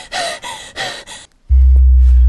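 A woman's quick, frightened gasping breaths, several in the first second or so. After a brief hush, a sudden, very loud deep bass drone from a film score comes in and holds.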